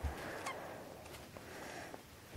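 Quiet room tone with a soft low bump at the start and a light click about half a second in: small handling noises.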